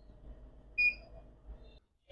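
Single short, high electronic beep from a Dahua XVR recorder's built-in buzzer, about a second in, as the recorder finishes booting into its live view.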